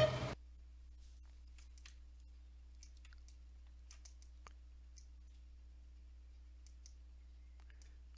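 A few faint, scattered clicks over a low, steady electrical hum.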